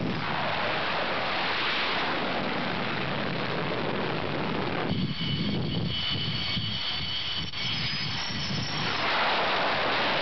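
Jet noise of an AF-1 (A-4) Skyhawk running at takeoff power on a carrier flight deck: a steady rush with a high whine that joins in about halfway through.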